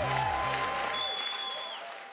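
Theatre audience applauding, the clapping fading out toward the end.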